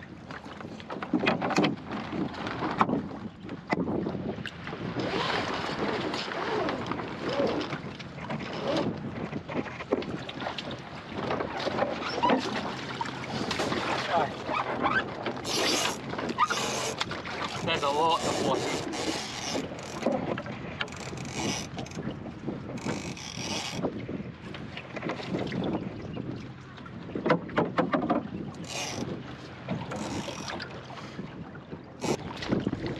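Water sloshing and splashing around a small swamped plywood sailing skiff under way, uneven and gusty, with wind buffeting the microphone. Several sharper splashes come in the second half.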